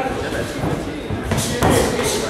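Boxing gloves hitting in sparring: two sharp smacks a third of a second apart past halfway, over a background of voices.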